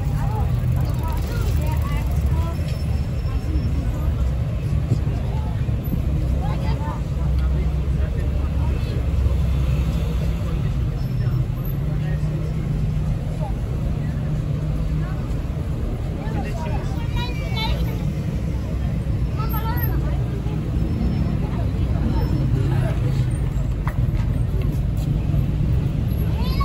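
City street ambience: a steady low rumble of road traffic, with snatches of passers-by talking.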